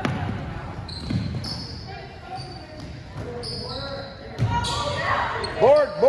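Basketball bouncing with dull thuds on a hardwood gym floor and short high sneaker squeaks in a large echoing hall. Near the end, two loud rising-and-falling shouts from spectators as a shot goes up.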